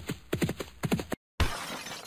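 Animated-logo sound effects: a quick run of galloping hoofbeats, then after a short break a sudden crash about one and a half seconds in that trails off in a noisy decay.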